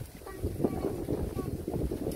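Wind buffeting the microphone, an uneven low rumble.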